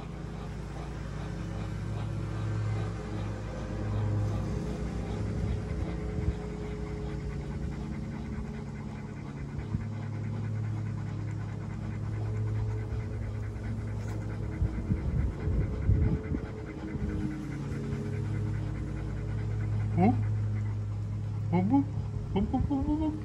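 Dogs panting rapidly and steadily over a steady low hum. Near the end come a couple of short rising whine-like calls.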